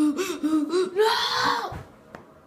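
A child's voice making wordless vocal noises: a run of short pitched sounds, then a louder, breathier one about a second in that dies away just before the end.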